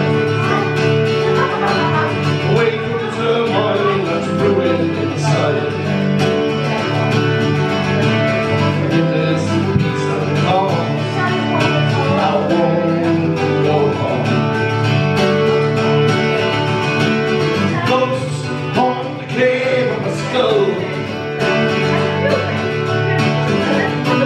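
A mandolin-family string instrument strummed steadily in a folk song, with a man's singing voice over it.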